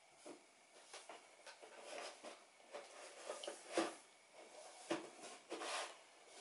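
Faint rustling and a few soft knocks from a croissant being picked up and handled at a table, the clearest knocks about four and five seconds in.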